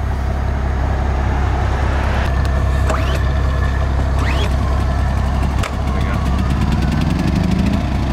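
An engine idling with a steady low hum, with a tone rising in pitch over the last couple of seconds.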